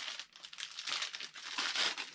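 Clear plastic packaging crinkling as a rubber engine mount is handled and taken out of its bag, an irregular run of crackles.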